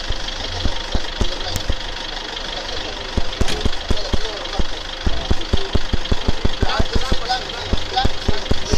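An engine idling close by, heard as a regular low thudding of about four to five beats a second, with people talking around it.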